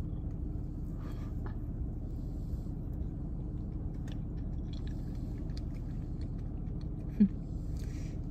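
Faint chewing of a mouthful of soft frosted carrot cake, with light mouth clicks, over a steady low hum inside a car. There is a short "mm" near the end.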